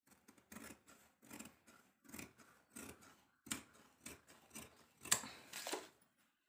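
Scissors snipping through folded cotton cloth in a steady run of cuts, about one and a half a second, the loudest about five seconds in.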